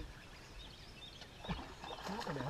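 Quiet outdoor background with a few faint, short bird chirps in the second half.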